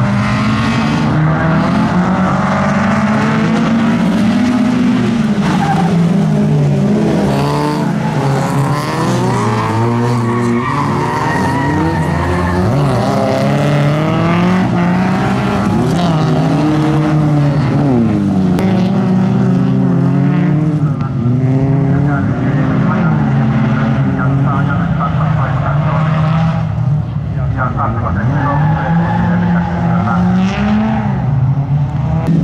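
Several folkrace cars' engines revving and racing together, their notes rising and falling as they accelerate and lift. Tyres skid on the loose track surface.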